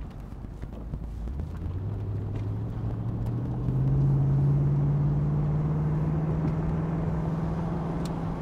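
1993 Corvette's 350 LT1 V8 pulling away under acceleration, its engine note rising in pitch and getting louder over the first few seconds, then settling into a steady, slowly climbing cruise, heard from the open cockpit with the top down.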